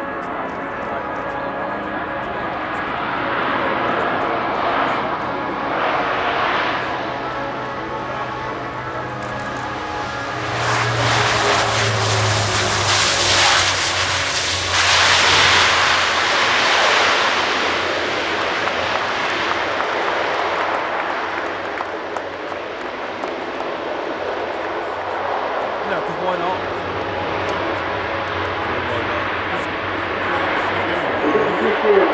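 Twin Rolls-Royce AE 2100 turboprop engines and six-blade propellers of a C-27J Spartan transport aircraft, with a steady propeller drone as it lands. From about ten seconds in the sound swells loudest for several seconds as the aircraft rolls past on the runway, its low hum dropping in pitch. It then settles to a steady run as it rolls away.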